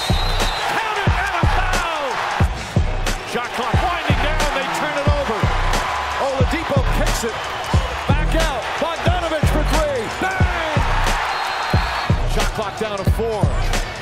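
Basketball game sound: arena crowd noise with sneakers squeaking and a ball bouncing on the hardwood court, under background music. The squeaks come as many short gliding chirps all through.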